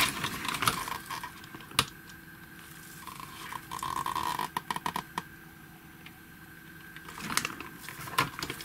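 Small clicks and knocks of hard plastic being handled as a small plastic pulley is pressed onto a toy motor's shaft. There is one sharp click about two seconds in and a quick cluster of clicks around five seconds.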